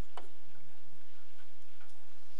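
Pen tip tapping on a tablet screen: one light click, then a few faint taps, over a steady low hum.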